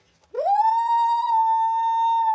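A person's voice giving one long, high falsetto "woo": it swoops up about a third of a second in and holds steady on one note.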